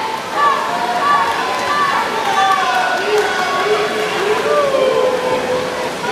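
Spectators shouting and cheering for swimmers in a race, many voices calling over each other with drawn-out rising and falling yells, over a steady wash of noise.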